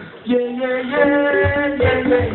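Live concert music played through the hall's sound system, starting with long held notes. A bass drum beat comes in about a second and a half in.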